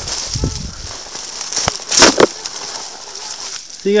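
Crunching and crackling of dry brush and loose dirt underfoot on a steep slope, with rope and camera handling; a sharp crackle comes about two seconds in.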